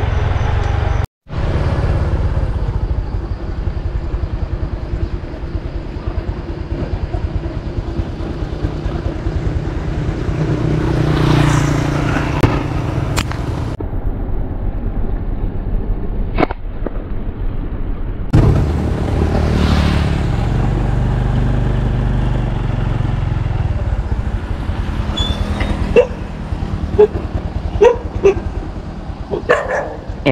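Motorbike riding along a road: steady engine and road noise, broken off abruptly several times, with a few sharp clicks near the end.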